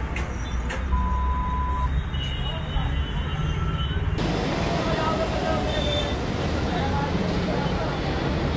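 Busy roadside traffic noise: a steady rumble of vehicle engines with people talking in the background, and a short steady beep about a second in.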